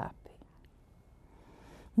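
An elderly woman's voice ends a word with a breathy "st-op" at the start, then a pause of near silence: faint room tone with a low hum.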